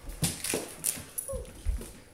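Toy swords striking a toy shield and each other in a mock sword fight: a quick run of sharp knocks, with a short vocal cry about a second and a half in.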